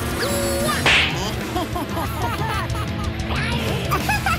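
Cartoon sound effects over background music: a whip-crack snap about a second in, followed by a run of short squeaky chirps.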